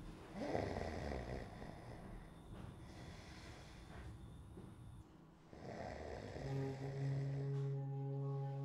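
A man snoring in a drunken sleep: two long snores about five seconds apart. A low held music chord comes in near the end.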